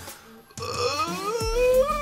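After a brief near-silent pause, a man lets out a long, drawn-out groan of disgust that slowly rises in pitch, over background electronic music.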